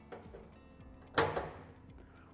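The stainless-steel drum flaps of a top-loading washing machine being pressed shut by hand: a few light clicks, then one sharp metallic snap about a second in as the flap latch catches.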